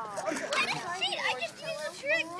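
Children's voices, talking and laughing, with no clear words.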